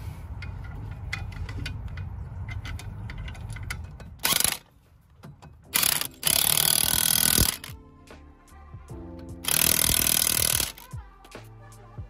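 Cordless impact wrench tightening lug nuts on a wheel: a short burst, then two longer runs, each stopping abruptly.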